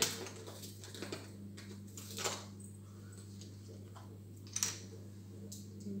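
A few light clicks and knocks from a liquid-cream carton being handled over a kitchen food processor, heard over a steady low hum.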